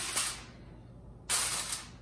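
Aluminium foil crinkling as it is pulled over a roasting pan: a short rustle at the start, then a louder burst of crinkling from a little past halfway that stops sharply.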